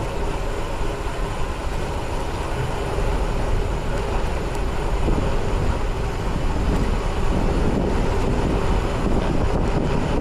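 Steady wind noise on the camera microphone and the rumble of bicycle tyres rolling on a concrete road at riding speed.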